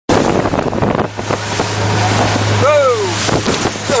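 Motorboat running through rough chop: a steady low engine hum under loud wind buffeting on the microphone and water spray. About two-thirds of the way through, a person gives a short falling whoop.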